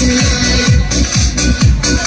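Electronic dance music with a steady kick drum, about two beats a second.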